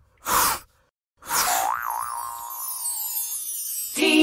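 Cartoon sound effects for an animated logo: a short, breathy swish, then about a second later a wobbling boing-like tone under a shimmering sparkle that falls in pitch and fades after about two seconds.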